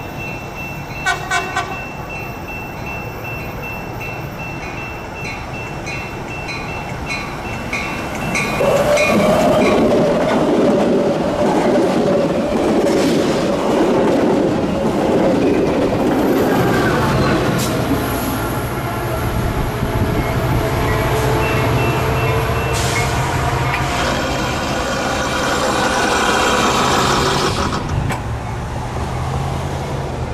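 Railroad crossing bell dinging steadily, with three sharp clicks about a second in. A Metra commuter train then sounds a long horn blast and passes close by, its wheels rolling over the rails and its diesel locomotive running as it goes past.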